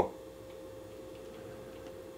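Jibo social robot swivelling its body back round to face forward, with a few faint, irregular ticks from its motors over a steady faint hum.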